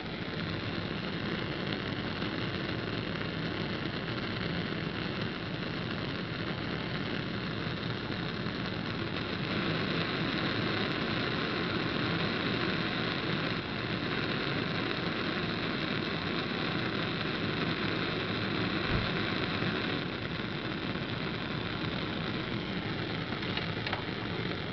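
Bunsen burner flame running with its air inlet open: a steady rushing of gas and air through the barrel, the sound of a properly adjusted, air-rich flame.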